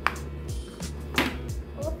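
Background music with steady low notes, with two short clicks, one at the very start and one just after a second in.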